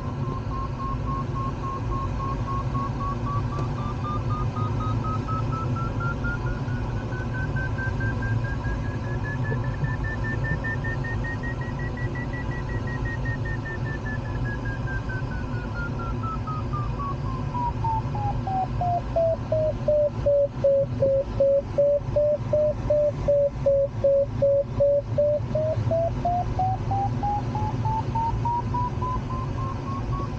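Glider's audio variometer tone sliding slowly up to a high pitch, then down low and rising again as the climb rate changes, pulsing in quick beeps for several seconds while it is low. Steady rush of airflow in the cockpit underneath.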